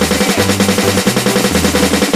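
Electronic dance track with a pulsing synth bass line, over which a fast, even roll of drum hits runs, tapped on the pads of a phone drum app.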